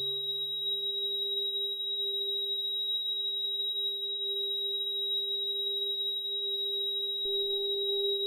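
Mutable Instruments modular synthesizer holding pure, sine-like tones: a high-pitched note enters at the start and sustains over a steady lower drone. A low tone fades out in the first two seconds, and a click about seven seconds in brings a low tone back in.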